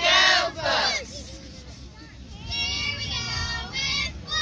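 Youth cheerleaders chanting a cheer in unison: two loud shouted syllables at the start, then a longer, drawn-out called phrase about halfway through.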